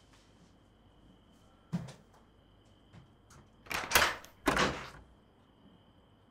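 A door being handled: a light knock, then two louder noisy sounds close together, each about half a second long, over a faint steady high tone.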